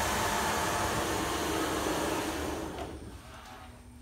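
A loud rush of air, a steady hissing whoosh that lasts about three seconds and then dies away.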